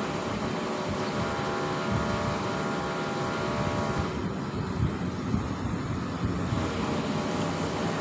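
Steady outdoor background noise with a steady machine hum of several even tones, which stops abruptly about halfway, leaving a plain even rush.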